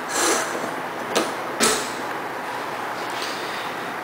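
Pull-out kitchen faucet spray head being handled on its hose: three short scraping and clicking noises, one at the start, a click about a second in and another scrape just after, over a steady hiss.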